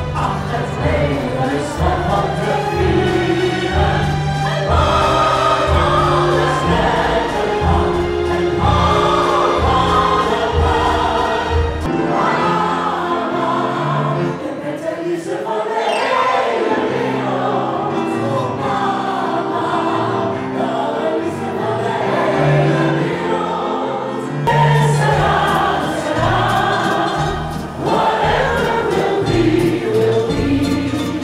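Live amplified pop vocal music: a male and two female singers performing over a backing track, with the audience singing along. The bass and beat drop out for about twelve seconds in the middle of the passage, then come back.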